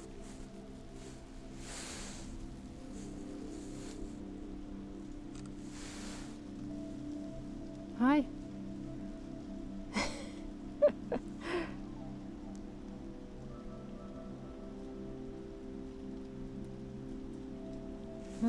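A steady low hum with a faint hiss. About eight seconds in there is a short rising-and-falling vocal sound, and a few brief clicks and short sounds come around ten to twelve seconds.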